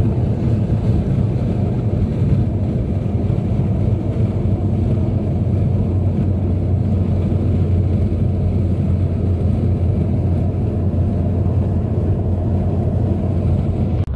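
Car cabin noise while cruising at motorway speed: a steady, loud low rumble of engine and road noise.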